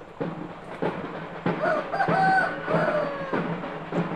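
A rooster crows once, a stepped call of about two seconds in the middle, over drum beats at about three a second.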